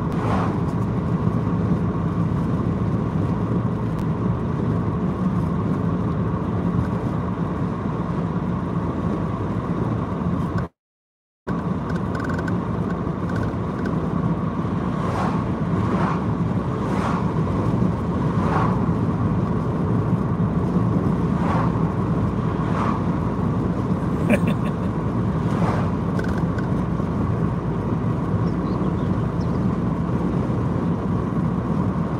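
Steady road and engine noise of a car driving along, heard from inside the cabin. The sound cuts out completely for under a second about eleven seconds in.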